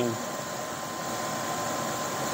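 Steady background machinery noise, an even whooshing hum with a faint constant tone running through it.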